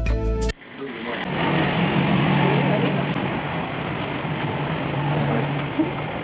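Background music that cuts off abruptly about half a second in, followed by a steady, noisy rumble with a low, wavering hum.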